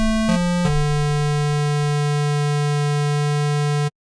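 Surge software synthesizer playing a bright, buzzy sustained tone: a few quick notes stepping in pitch, then one long held low note that cuts off abruptly near the end. The oscillator drift is being turned up, yet the tone stays steady and its pitch wander is barely audible.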